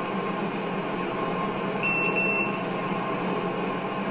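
A steady hum with a single short high-pitched beep, under a second long, about two seconds in: the driving simulator's takeover-request alert.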